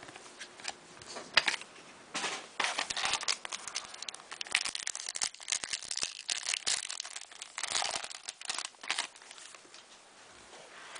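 Foil trading-card pack wrapper being torn open and crinkled by hand: a dense, irregular run of crackles, thickest from about two seconds in until near the end.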